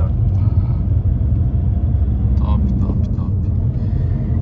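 Steady low rumble of a Seat Leon with a 1.9 TDI diesel engine on the move, heard from inside its cabin: engine, tyre and road noise. A few faint voice sounds come a little past halfway.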